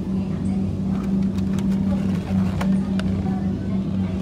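Steady low mechanical hum, with a few sharp light clicks of plastic packaging in the middle as a plastic-wrapped tray of eggs is handled.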